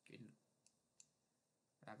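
Two faint computer mouse clicks, about a third of a second apart.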